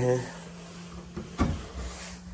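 Hinged door of a fitted wardrobe being pulled open, with a short knock about one and a half seconds in.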